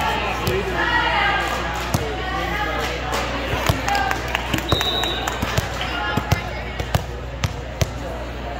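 Volleyballs being hit and striking the hard court floor, a dozen or so sharp, irregular smacks and thumps over a steady background of players' and spectators' voices.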